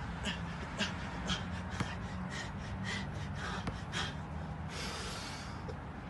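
Short, sharp exhaled breaths, about two a second, from a person working through fast bar dips. A longer breathy rush follows about five seconds in.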